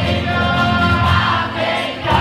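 Live worship music: a church band playing while a crowd of voices sings along together, loud and steady with long held notes.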